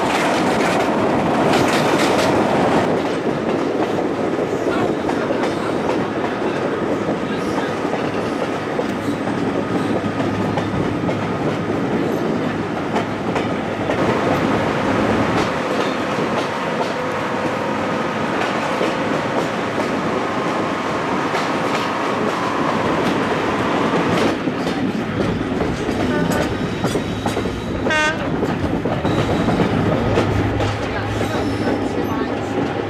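Passenger train running along the line, heard from an open carriage window: a steady rolling noise with wheels clicking over the rail joints.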